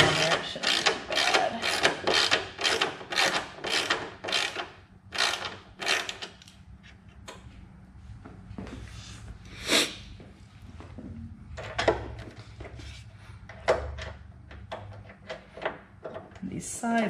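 Socket ratchet clicking in a quick, even rhythm, about three clicks a second, as a bolt is run into a plastic grille bracket. After about six seconds it gives way to a few separate clicks and knocks.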